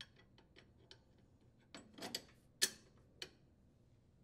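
Faint metallic clicks and clinks of steel mounting bolts being handled and seated in a riding-mower steering gear sector. A few small ticks are followed by a handful of louder knocks about two to three seconds in.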